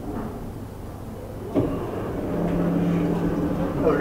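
Automatic sliding glass door's motor running with a steady hum, after a sharp click about a second and a half in.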